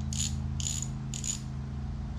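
A ratchet wrench clicking in three short bursts, about half a second apart, as the screws on a Honda Fourtrax 300's engine oil filter cover are worked loose, over a steady low hum.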